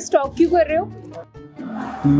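A woman speaking in a scripted scene, over background music.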